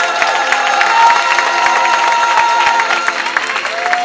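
An audience applauding and cheering, with whoops and a long held voice over the clapping, as a gospel choir's song closes.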